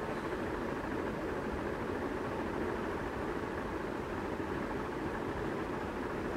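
Steady background noise of the recording room, an even hiss and rumble with no distinct events.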